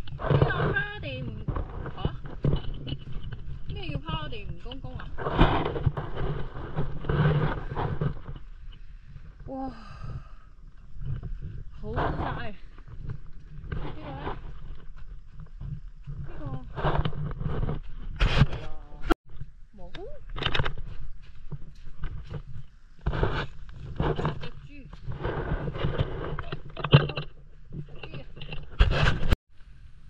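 Indistinct voices, with a low, steady rumble of wind on the microphone underneath. There are a few sharp clicks later on.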